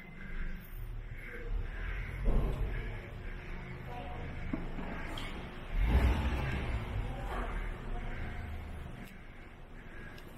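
Low, steady rumble of an underground parking garage with faint, indistinct voices, swelling louder briefly about two seconds in and again around six seconds.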